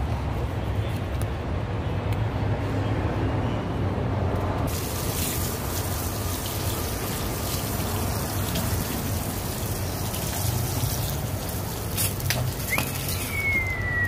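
Water from a hose spray nozzle hissing onto a metal fish-cleaning table, starting about a third of the way in, over a steady low hum. Near the end a short whistle-like tone falls in pitch.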